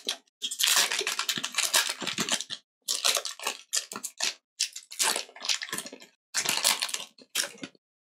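Foil wrapper of a Pokémon TCG booster pack crinkling and tearing as it is pulled open by hand, in quick crackly runs with short pauses.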